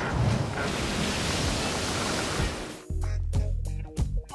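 A sustained rushing noise, the sound effect of an animated logo, that dies away about three seconds in, when music with sharp percussive hits begins.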